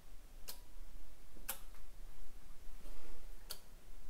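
Relay clicking as the PLC switches it in its automatic cycle of two seconds on and one second off: a click about half a second in, another a second later, and a third two seconds after that, near the end.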